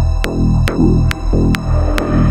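Progressive psytrance track playing: a steady electronic beat at a little over two beats a second over a pulsing bass line and sustained synth tones.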